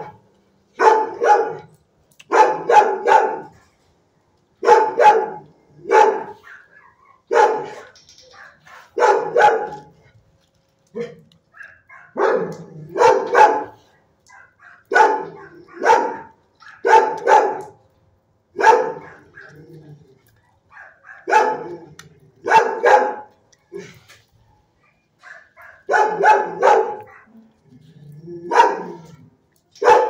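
Dog barking over and over in a shelter kennel, one to three barks at a time, about every second or two.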